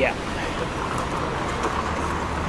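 Steady city street traffic noise, with a few faint footsteps on the paving slabs.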